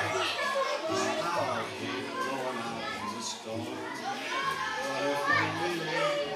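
Many children chattering and calling out at once in a large hall, with music playing behind.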